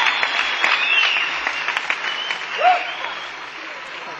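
Concert audience applauding, with a few whistles and shouts; the clapping thins out and fades toward the end.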